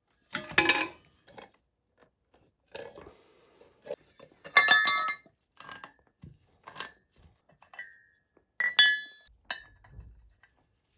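Copper pipe, brass fittings and metal hand tools clinking and clanking against each other on a hard floor: a series of separate ringing metallic knocks. The loudest come about half a second in and about four and a half seconds in, with a couple more near the end.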